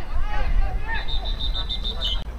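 A referee's whistle blown shrilly in a rapid series of short pulses, about seven a second, starting about a second in and ending on a short lower note. Players' voices are heard before it.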